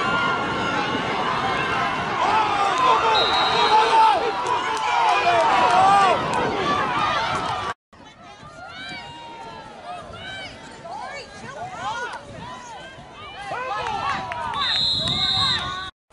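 Spectators at a youth football game shouting and cheering, many voices at once. After a cut, quieter scattered shouting from the sideline, with a referee's whistle blown for about a second near the end.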